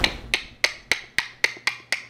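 A ticking woodblock-style sound effect: short, dry, evenly spaced clicks, about four a second.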